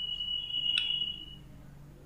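A steady high-pitched tone lasting about a second and a half, with a faint click partway through.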